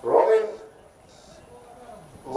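A single loud, short pitched call, about half a second long, right at the start, then only faint background.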